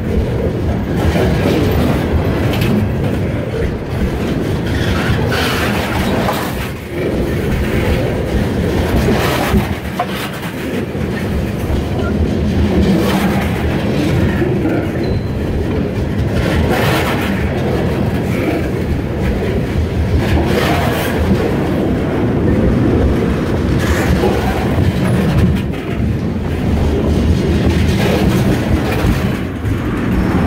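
Freight train cars rolling past close by: a steady rumble of steel wheels on rail, with sharp clacks every second or few as wheels strike the rail joints.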